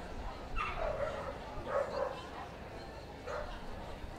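A dog barking three times, about a second apart, each short bark dropping in pitch.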